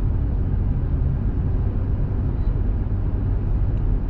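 Steady low rumble of a car's road and engine noise heard from inside the cabin while driving slowly through town.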